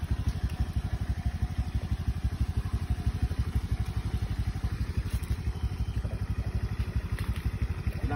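Honda automatic scooter's small single-cylinder engine idling: a steady, rapid low putter.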